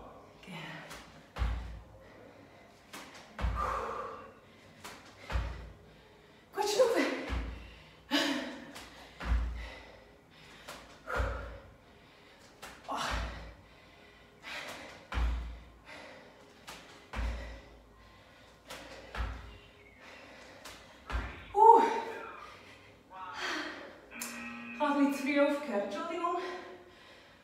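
Bare feet landing with a thud on a yoga mat over a wooden floor about every two seconds during squat jumps, around eleven landings, with hard breaths after each. The jumps stop a few seconds before the end, giving way to panting with some voice in it.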